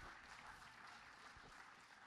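Very faint audience applause, close to silence.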